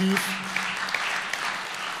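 Audience applauding: a dense patter of many hands clapping that fades a little toward the end.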